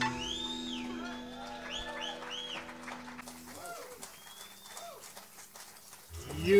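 A live band's last chord rings out and fades away over the first three and a half seconds, while audience members whoop and whistle in short rising-and-falling cries. Scattered clapping follows as the sound dies down.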